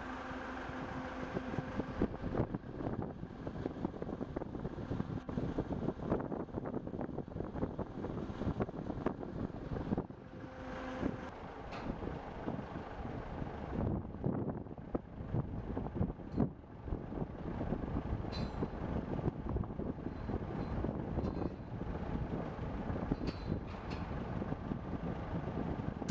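Outdoor construction-site and road-traffic noise: a continuous rumble of vehicles and machinery with frequent small knocks and clatter, and a steady engine hum briefly near the start and again around ten seconds in.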